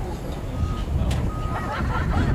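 Wind rumbling on the microphone, with voices in the background.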